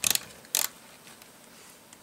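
LEGO plastic plates being pressed down onto a chassis, their studs snapping in with two sharp clicks, one at the start and one about half a second later.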